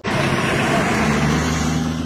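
Pickup trucks driving on a dirt road: engines running steadily under a loud wash of tyre and road noise, starting abruptly.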